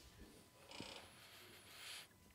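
Near silence: room tone in a pause of speech, with a faint hiss during the second half.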